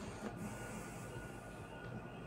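Quiet room tone with a faint steady high hum and a couple of faint soft clicks.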